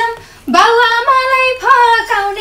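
A woman singing a line of a Nepali dohori folk song in a high voice, breaking off briefly near the start and then holding long, wavering notes.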